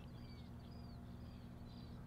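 Faint, short bird chirps, several in a row, over a low steady hum.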